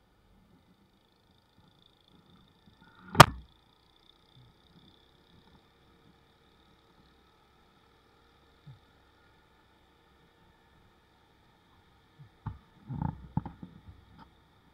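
A single sharp knock about three seconds in, then a cluster of softer knocks and thumps near the end, over a very faint steady hum.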